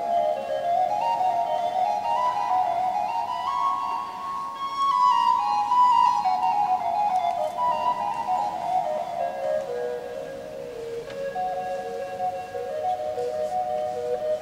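Baroque transverse flute (traverso) playing a flowing melodic line over harpsichord accompaniment. The melody climbs in steps to its highest notes about halfway through, then winds back down.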